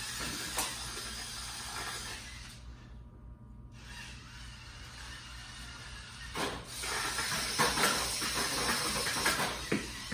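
A VEX competition robot's motors and intake rollers whirring as it drives across the field and works at a goal tower. The noise grows louder about six seconds in, with scattered clicks and knocks until near the end.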